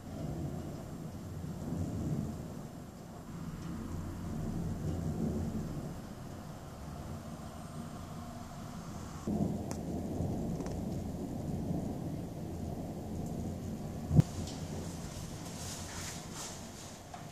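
Thunder rumbling low in long rolling waves that swell and fade, with a sudden stronger rise about nine seconds in. A single sharp, loud crack stands out near the end.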